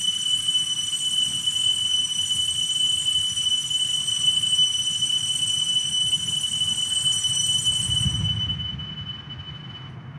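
Altar bells rung continuously at the elevation of the chalice during the consecration at Mass: a steady, high, sustained ringing that fades out near the end.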